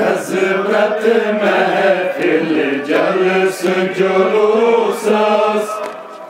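Men's voices chanting a Kashmiri noha, a Shia mourning lament, as one long sung phrase that starts abruptly and tails off near the end.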